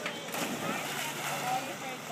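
A boy landing feet-first in a swimming pool off a diving board, the splash faint and distant, under a background of faint voices from around the pool.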